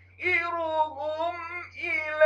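A man's high voice chanting Quran recitation in the drawn-out, melodic mujawwad style: a short breath pause at the start, then one long held phrase with a wavering, ornamented pitch, and the next phrase starting near the end. A faint steady low hum runs beneath.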